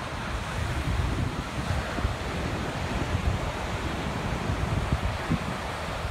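Ocean surf breaking on a beach, a steady wash of noise, with wind buffeting the phone's microphone in uneven low rumbles.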